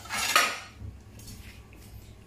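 Brief handling noise as a paper plate of raw fish fillets is held and the fish is touched: a scraping rustle about half a second long right at the start, followed by a few faint taps.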